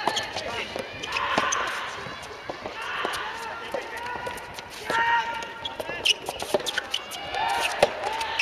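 A soft tennis rally: the soft rubber ball is struck by rackets and bounces on the hard court in a run of sharp pops, with players' voices calling out several times.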